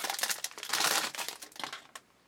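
Foil wrapper of a trading-card pack crinkling as it is torn and peeled open by hand, loudest about a second in and dying away near the end.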